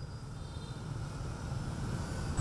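Street traffic ambience with motorbikes and scooters, a low steady rumble that fades in and grows gradually louder.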